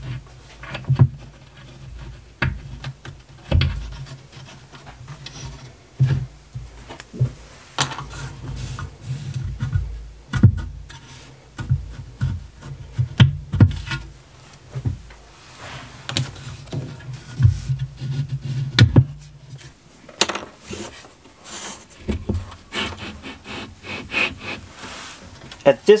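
Metal laser engraver frame being handled and shifted on a wooden spoilboard: repeated knocks, clicks and scrapes as it is set down and nudged into place over its feet.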